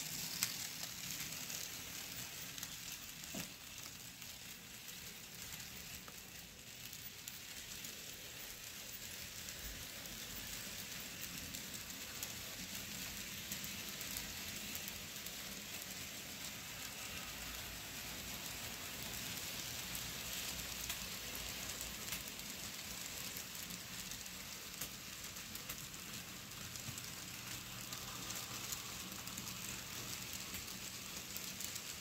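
Model freight train cars rolling past on the track: a steady, faint hiss and rattle of small wheels on rail.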